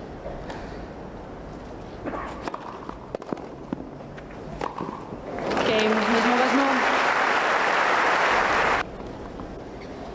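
A few sharp racket strikes on a tennis ball during a point, then crowd applause that breaks out about five seconds in, with a voice calling over its start, and cuts off suddenly about three seconds later.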